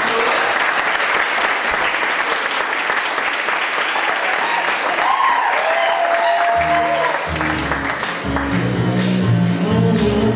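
Audience applauding steadily, then Latin dance music with a prominent bass line starts about six and a half seconds in as the applause dies away.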